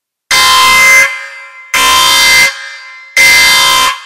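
An electronic buzzer-like tone sounded three times at even spacing, each about three-quarters of a second long with a short fading tail.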